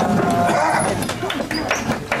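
Hand-cranked wooden rope-making machine turning as the strands are twisted into rope, with several short clicks and knocks, under people talking.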